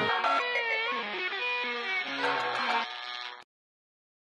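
Closing background music: a few held notes that bend in pitch, with no beat under them, cutting off abruptly about three and a half seconds in.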